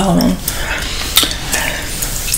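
Gum chewing: a few wet mouth clicks and smacks, sharp and short, spread through the pause in speech.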